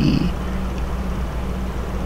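A steady low hum with a faint flutter, fairly loud, filling the pause between words.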